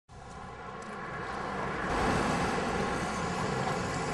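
Street ambience with a steady rumble of traffic, fading in over the first two seconds and then holding level.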